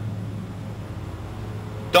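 A pause between words filled by a steady low hum over faint outdoor background noise, with a faint steady tone joining in about halfway through.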